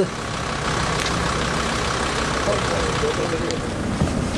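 Steady low rumble of a vehicle engine idling close by, with faint voices in the background.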